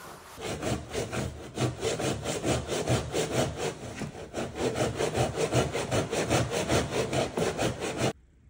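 Hand jamb saw cutting through the bottom of a wooden door jamb with fast back-and-forth strokes, about three to four a second, starting about half a second in. The blade rides flat on a piece of flooring to undercut the jamb so the new hardwood can slide under it.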